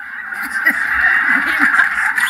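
A person's loud, harsh scream, held without a break.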